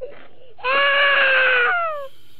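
A woman's loud, play-acted crying wail in mock despair. It opens with a short breathy sob, then one long held cry that sags and slides down in pitch near the end.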